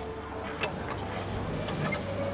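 Arena background of a gymnastics hall on a broadcast soundtrack: a steady low hum under an even haze, with a couple of faint knocks about half a second and a second and a half in.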